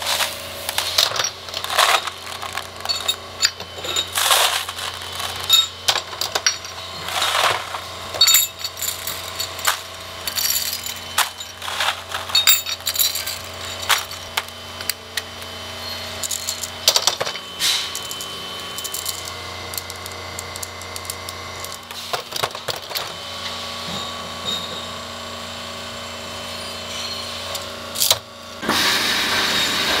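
Steel bearing balls and bearing parts clinking as they are handled: many sharp metallic clinks over a steady low machine hum. The clinks thin out past the middle, and a louder, steady machine noise comes in near the end.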